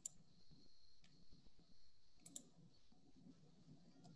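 Near silence with faint computer mouse clicks: a double click at the start and another about two and a half seconds in.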